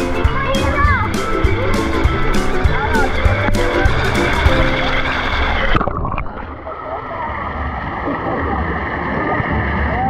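Music with a voice, over sloshing and splashing pool water. About six seconds in the sound turns dull and muffled as the camera goes underwater, and the water and music carry on muted.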